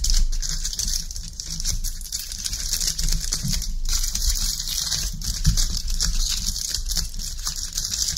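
Aluminium foil crinkling as it is folded and pressed by hand around a cardboard tube, a steady run of small crackles.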